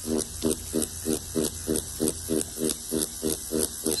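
Electric Shark Innercoil audio-driven coil tattoo machine running off a signal from the Ink Weasel app, its needle buzzing in a regular pulse about four to five times a second over a steady low hum.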